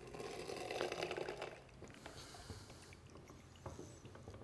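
Lever-arm citrus press crushing a lime half: a faint crackling squish as the fruit is squeezed and the juice runs out, lasting about a second and a half, then a few light knocks from the press.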